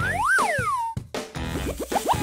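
Cartoon sound effects over background music: a whistle-like tone that slides up and back down, then a quick run of short upward swoops.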